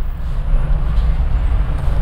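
Steady low rumble, with a faint rustle of craft foam sheets being slid about by hand.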